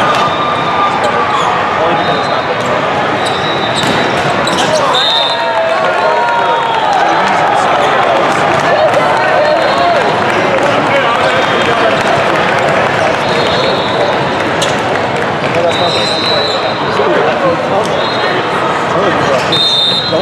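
Din of a busy indoor volleyball hall: many overlapping voices of players and spectators, with volleyballs being struck and bouncing on the court now and then. Short high-pitched tones sound several times.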